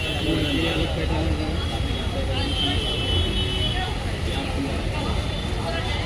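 Indistinct voices and chatter in a busy clothes shop over a steady low rumble.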